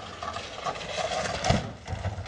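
Steady, hiss-like outdoor background noise on a security camera's audio, with a single thump about one and a half seconds in.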